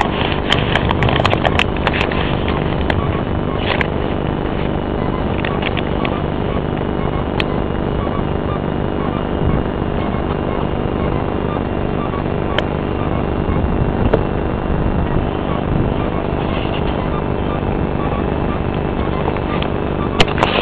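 Steady engine drone and rushing air noise heard from on board a light aircraft in flight, with a few sharp clicks in the first few seconds.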